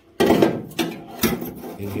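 Thin fabricated sheet-steel plate pushed up into a car body's bulkhead opening, steel scraping and knocking against steel: a loud scrape-and-knock about a quarter of a second in, then a few more knocks and rubbing as it is seated.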